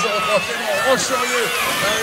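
Speech: the race commentator talking without a break, over outdoor background noise.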